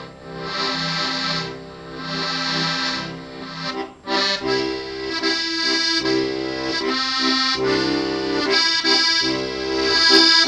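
Steirische Harmonika (Styrian diatonic button accordion) playing a melody over held chords and bass notes. After a brief break about four seconds in, the bass and chords move in a steadier rhythm.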